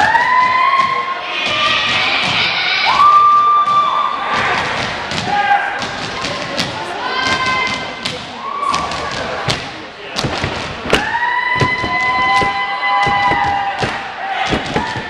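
Cheerleaders shouting a cheer in unison, with long drawn-out syllables, over many sharp claps and thumps.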